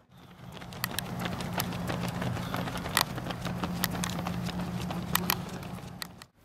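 Footsteps of several runners on a synthetic running track, an uneven patter of footfalls over a steady low hum, fading in at the start.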